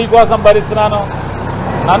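A man speaking Telugu, who breaks off about a second in, over a steady low background noise that carries on through the pause.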